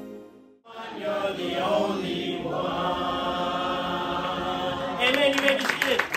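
Music fades out, and under a second in a short choir-like sung passage begins; near the end it gives way to crowd noise with voices.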